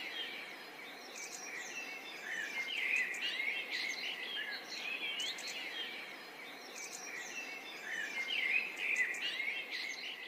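A group of sparrows chirping and twittering continuously, with many short, overlapping chirps and quick up-and-down pitch slides.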